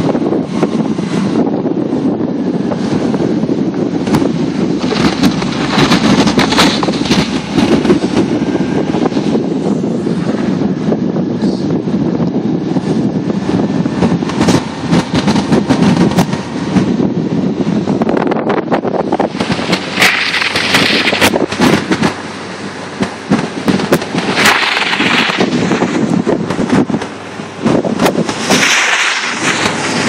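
Wind buffeting the microphone of a phone held out of a moving car's window, over the car's running and tyres on packed snow, with constant crackling and a few short bursts of hissing.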